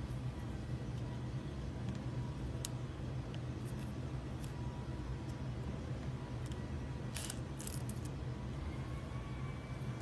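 A few faint scratches and clicks from a wooden toothpick picking peeled Plasti Dip rubber coating out of the creases of a truck emblem, bunched together a little past halfway, over a steady low background hum.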